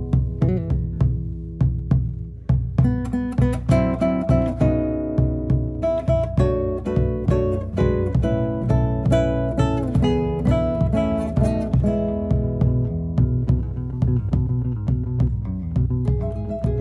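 Instrumental Argentine folk music: an acoustic guitar plucks a melody of quick, ringing notes over a low bass line.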